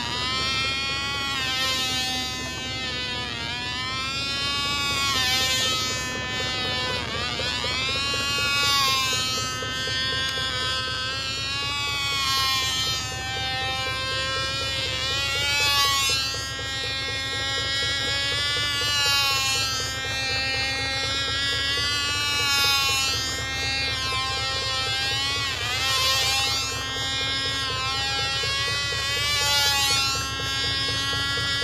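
Cox Baby Bee .049 two-stroke glow engine on a control-line model airplane running flat out with a high buzz. Its pitch and loudness rise and fall about every three and a half seconds as the plane circles the pilot, each lap passing near and then away.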